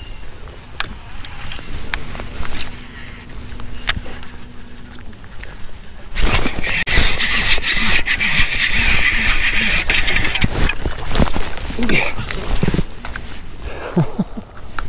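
A baitcasting reel cranked hard while a hooked largemouth bass is fought to the boat. From about six seconds in there is a loud whirring rush with rapid clicks for about four seconds, easing off as the fish is landed.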